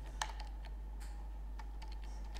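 Computer keyboard being typed on: a few separate, unevenly spaced keystrokes, the first the sharpest, over a steady low hum.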